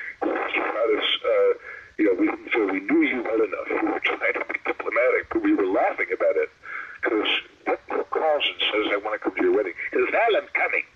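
Speech only: a man talking without pause, in a thin voice that lacks low bass, as over a call line.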